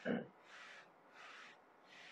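Print-head carriage of a UV flatbed printer shuttling back and forth while printing the white ink layer, a soft swish on each pass about every 0.7 seconds. A brief louder low sound comes right at the start.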